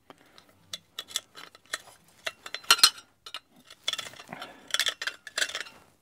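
Large twist drill bit turned by hand against the edge of a drilled hole in a sheet-steel bracket, deburring it: irregular metallic scrapes and clicks, the loudest a little under three seconds in.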